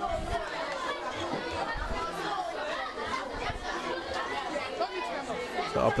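Many schoolchildren talking at once in a crowded classroom: a steady hubbub of overlapping voices.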